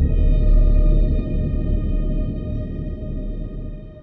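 Dark ambient music: a held drone of steady high tones over a deep, heavy low swell that fades away near the end.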